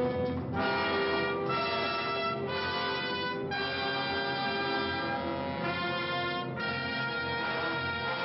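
Orchestral film score led by brass: a series of held chords that change roughly once a second, with one longer chord in the middle.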